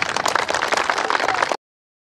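A crowd applauding with many fast, overlapping claps; it cuts off suddenly about one and a half seconds in.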